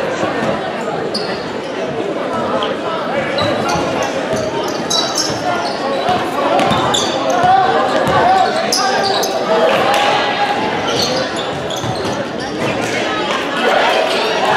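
A basketball dribbled on a gym floor, with sneakers squeaking in short high chirps as players cut, over the chatter of spectators in the gymnasium.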